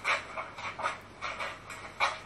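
Stifled, breathy laughter in a string of short bursts.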